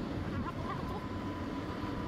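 Steady low rumble of engine and tyre noise heard from inside a moving vehicle on the road. A faint thin whine joins about a second in.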